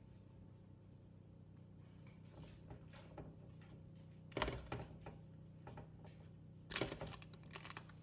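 Hands laying zucchini slices into a disposable aluminium foil baking tray: light clicks and foil crinkles, with two louder bursts about four and a half and seven seconds in, over a steady low hum.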